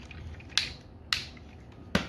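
Three sharp plastic clicks as the parts of a transforming toy robot are snapped and posed by hand, the first two with a short scrape and the last near the end.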